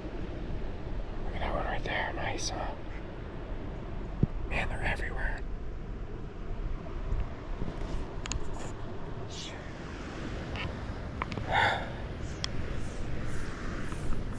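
Soft, whispered speech in a few short bursts over a steady low rush of outdoor background noise.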